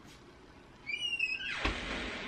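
A door creaking on its hinges with a short high squeak about a second in, then a swelling hiss of noise near the end as it swings shut.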